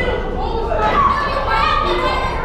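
Several voices talking over one another, children's voices among them, in a steady babble with no single clear speaker.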